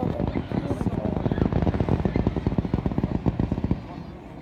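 A fireworks barrage firing in rapid succession, a dense stream of pops and crackles that cuts off shortly before the end.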